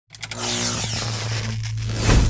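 Sound effect of a neon sign flickering on: a few quick electric crackles at the very start, then a steady electrical buzzing hum with a hiss sweeping over it.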